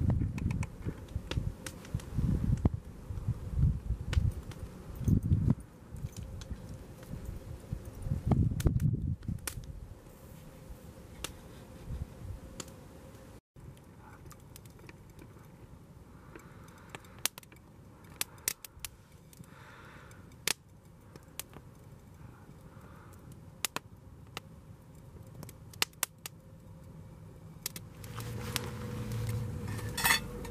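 Low, gusty rumbles of wind on the microphone, then an open wood campfire crackling, with sharp irregular snaps and pops.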